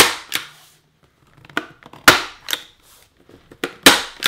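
Hand-held framer's point driver firing points into the inside edge of a wooden picture frame to hold the glass, mat and backing in. Each shot is a sharp snap; several come over the few seconds, the loudest at the very start, about two seconds in and just before the end.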